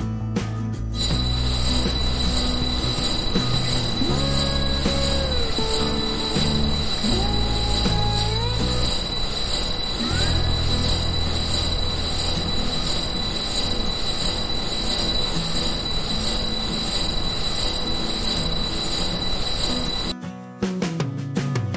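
High-pitched steady whine of the small motor driving a miniature belt-driven rice-hulling mill, starting about a second in, over background music.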